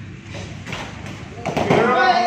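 A few thuds from sparring kickboxers trading blows in padded gear, then loud shouting voices from about one and a half seconds in, as one fighter goes down onto the foam mat.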